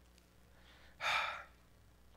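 A man's single short breath into a close microphone, about half a second long and about a second in, between phrases of a sermon.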